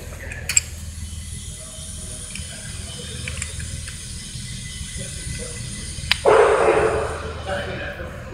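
Oiled metal oil-pump rotors and housing being handled and fitted together by hand: a small click about half a second in and a sharp metal click about six seconds in, followed by about a second of rustling noise, over a steady low workshop hum.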